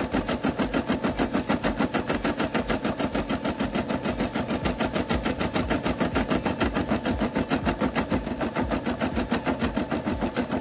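Brother SE600 embroidery machine stitching a leaf design into vinyl, its needle running a rapid, very even rhythm of stitches throughout. It is going smoothly, with the thread not tangling.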